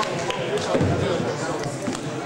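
Many people talking at once in a hall, an overlapping crowd chatter, with a dull thump just under a second in.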